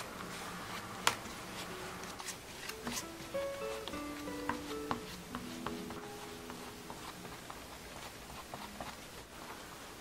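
Background music: a soft melody of short single notes. A sharp click comes about a second in.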